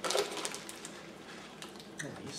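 Plastic snack wrappers crinkling and rustling as they are handled: a string of small crackles, loudest just after the start.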